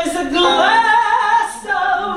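A woman singing into a microphone: a sustained sung note that slides upward about half a second in, is held, then steps down to a lower note near the end.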